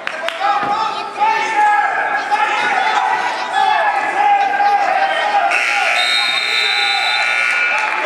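Gym scoreboard buzzer sounding one long steady blast of about two and a half seconds, starting about five and a half seconds in, marking the end of a wrestling period. Before it, spectators and coaches are shouting.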